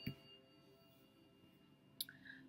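Near silence: faint, steady background music tones, with one short knock at the very start.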